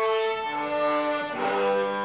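A children's string quartet of three violins and a cello playing slow held chords together, moving to a new chord twice.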